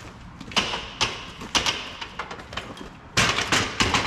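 Aluminium loading ramp clanking as it is handled and set down on the pavement: a few separate metallic knocks, then a louder quick run of clanks near the end.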